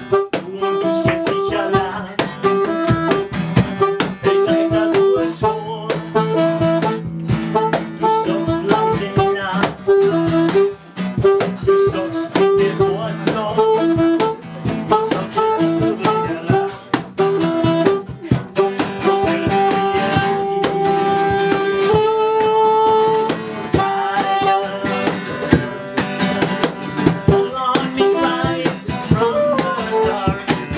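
Live saxophone and acoustic guitar music: a saxophone plays a melody of short and held notes over a steadily strummed acoustic guitar.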